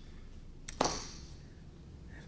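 Two short clicks close together, under a second in, against quiet room tone in a pause of speech.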